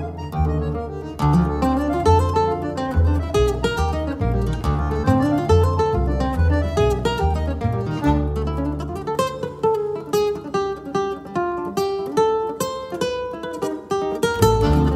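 Choro played live by a nylon-string classical guitar and a double bass: quick plucked guitar runs over deep bass notes. The bass drops out about two-thirds of the way through, leaving the guitar nearly alone.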